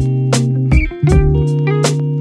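Background music: guitar and bass over a steady beat.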